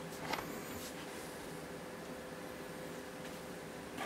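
Quiet workshop room tone with a steady faint hum, and one faint knock shortly after the start as parts are handled on the metal chassis panel.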